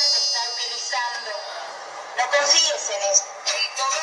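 Recorded audio played back through a phone's speaker: a high steady tone fading over the first second, then thin, muffled shouting voices.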